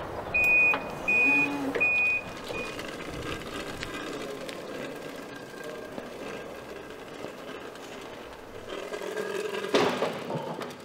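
Reversing alarm on a forklift sounding three steady high beeps, about half a second each, in the first two seconds or so. A knock near the end.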